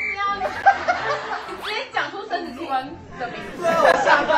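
Several people laughing and chattering over each other, with giggles and chuckles in among bits of speech.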